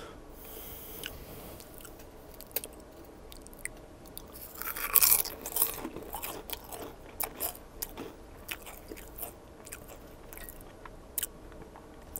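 Potato chip being bitten and chewed: a loud crunchy bite about four to five seconds in, then a run of sharp, crisp crunches as it is chewed.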